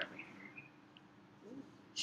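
A quiet pause: a low steady hum, with a few faint, short high chirps in the first second.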